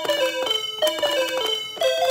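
Two musical calculators played together, their key-press beep tones forming a tune and its accompaniment: quick descending runs of electronic notes that repeat about once a second.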